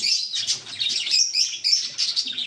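A flock of small caged parrots chirping continuously, a dense overlapping chatter of quick, high chirps.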